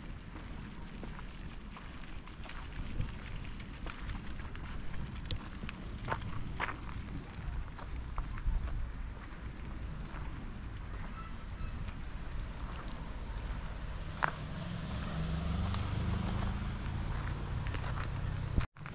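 Outdoor ambience with a steady low rumble and scattered light clicks. A low droning hum comes in a few seconds before the end.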